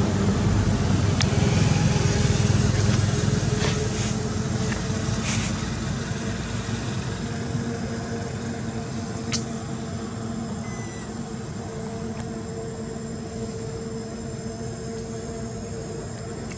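A motor vehicle engine running nearby: a steady low rumble, strongest in the first few seconds and then easing off.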